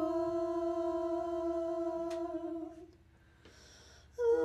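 A women's a cappella trio (soprano, mezzo-soprano and alto) holding one long, steady note that stops nearly three seconds in, followed by a short silence before the next phrase.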